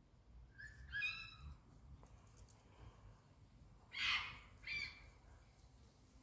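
A bird calling three times: a short call about a second in, then a louder, harsher call at about four seconds followed quickly by a shorter one.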